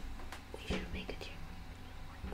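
Faint whispered speech, a few brief murmurs, over a low steady hum.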